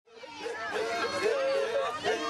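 Several people's voices overlapping, fading in over the first half second.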